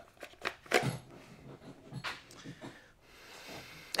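Handling of a knockoff Safariland 6354DO-style plastic duty holster: a few light clicks and knocks and some rustling as the pistol is worked against its stiff retention.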